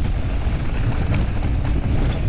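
Wind buffeting the camera microphone on a downhill mountain bike at speed, a loud steady low rumble, with tyre and bike rattle over the rough dirt trail.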